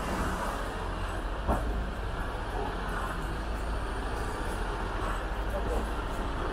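Outdoor ambience: a steady low rumble with faint voices of people walking past, and a single knock about a second and a half in.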